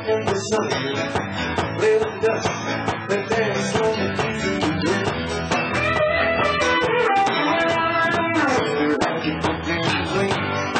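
Live country band playing on a concert stage: electric guitar over bass and a steady drum beat.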